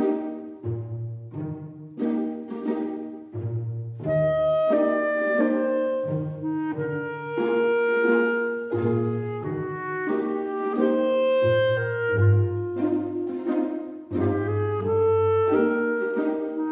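Instrumental background music. Short repeated chords over a bass line open it, and a sustained melody line joins about four seconds in.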